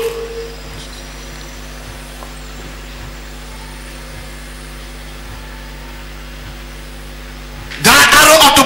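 Steady low electrical hum, with a faint hiss under it, from the amplified sound system while no one is shouting into it.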